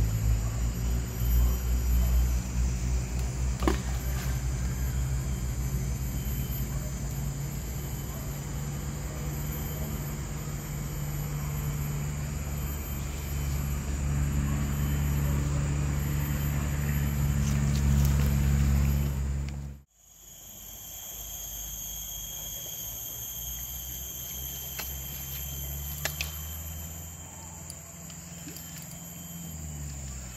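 A steady low rumble, like a distant engine, over a steady high insect buzz. The rumble cuts out abruptly about twenty seconds in and returns weaker.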